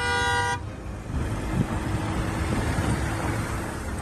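A vehicle horn sounds once, a steady note for about half a second, followed by a steady rushing noise.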